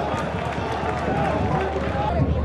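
Football stadium crowd noise: a sparse crowd's mixed voices and calls over a steady low rumble.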